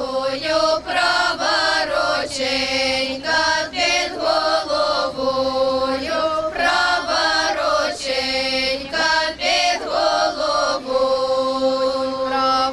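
Women's folk ensemble singing a Ukrainian folk song together in long held phrases, with brief breaks between phrases.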